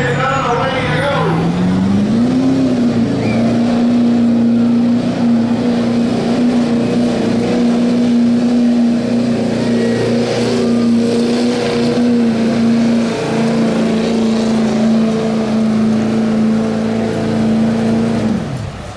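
Chevrolet Silverado pickup's diesel engine under full load pulling a weight-transfer sled. It revs up over the first two seconds, then holds at a steady high pitch through the pull, and falls away at the end.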